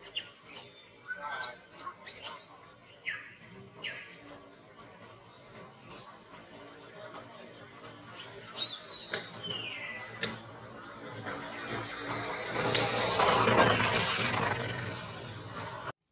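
A baby macaque giving short, high-pitched squealing cries with sliding pitch, several in the first four seconds and a few more about eight to ten seconds in. Near the end a rustling of leaves and branches builds up and is the loudest sound.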